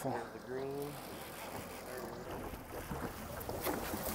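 Low background of a boat out on the water: wind and water wash over a steady low hum, with a man's voice speaking faintly and briefly in the first second.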